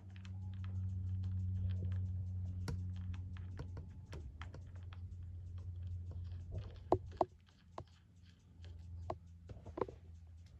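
A bolt being turned by hand into a freshly installed Helicoil thread insert in an aluminium engine part held in a vise, to test the repaired thread: a run of small light metal clicks and ticks, a few sharper ones near the end. A steady low hum sits under it, strongest in the first few seconds.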